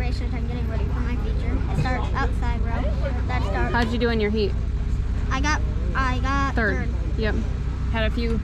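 A child talking in short phrases over a steady low rumble.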